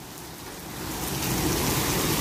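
Heavy rain falling on pavement and parked cars: a steady hiss that grows louder over the first second or so.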